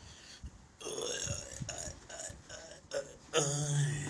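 A man burping: a long, deep burp starting about three and a half seconds in is the loudest sound, after a shorter, wavering vocal sound earlier on.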